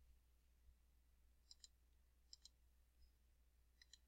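Faint computer mouse clicks against near silence: three quick double clicks, about a second apart.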